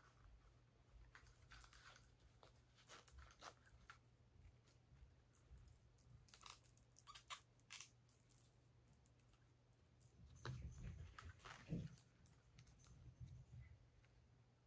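Faint handling sounds of a fashion doll being dressed: small plastic clicks and fabric rustles, with a louder stretch of rubbing and bumps about ten seconds in.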